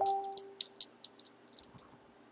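A scatter of light, sharp clicks and taps from small items being handled on a tabletop, with a brief steady tone in the first half-second.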